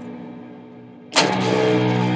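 Distorted electric guitar playing a slow doom-drone: a held chord fading away, then a single chord struck hard a little over a second in and left ringing loud and sustained.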